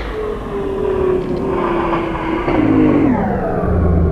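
Skateboard sliding down a long steel handrail: a continuous scraping grind with a ringing tone that slowly falls in pitch, growing louder about three seconds in.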